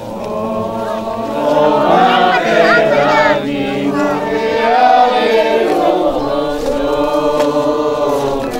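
Many voices singing together, a congregational hymn held in long sung notes.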